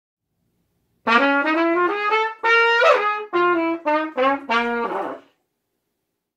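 A trumpet plays a short melodic phrase of about ten notes. It starts about a second in, holds one longer note in the middle, and stops just past five seconds.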